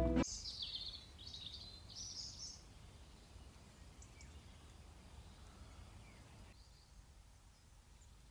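Faint countryside ambience with small birds chirping several times in the first two or three seconds, then only a faint low hush.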